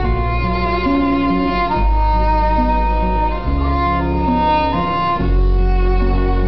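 Live acoustic music, instrumental with no singing: a violin plays a melody of long held notes over an acoustic guitar and sustained low bass notes.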